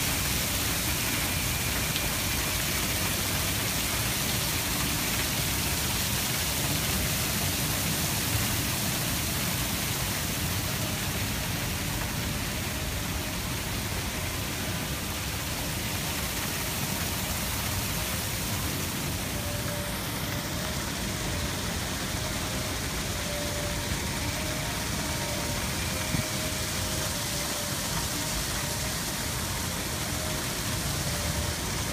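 Steady rushing of water spilling over the rim of a plaza fountain, blended with the hum of downtown traffic, easing a little after the first ten seconds.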